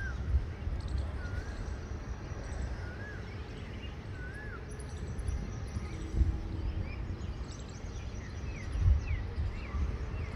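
Outdoor birdsong: a bird repeats a short rising-and-falling whistled note about every second and a half, then quicker, higher falling notes come in during the second half. A steady low rumble runs underneath, with two louder low bumps.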